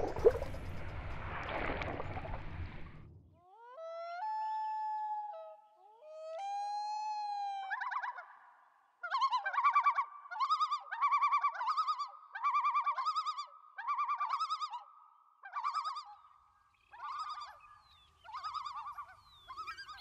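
A rush of water and bubbles for about three seconds as a released bass swims off. Then a common loon calls: two long, rising wail-like notes, followed by a long series of repeated warbling yodel phrases.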